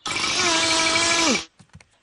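Cartoon drilling sound effect of a woodpecker boring through a wooden sign with its beak: a loud, steady drill-like whine over hiss, lasting about a second and a half, its pitch dropping as it winds down. A few faint clicks follow.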